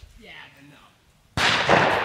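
A single gunshot about a second and a half in, sudden and loud, with a long echoing tail that dies away slowly.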